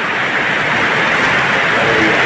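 Heavy rain pouring down, a loud, steady, even hiss.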